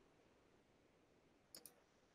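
Near silence, then two faint clicks about a tenth of a second apart near the end: a computer mouse double-clicking.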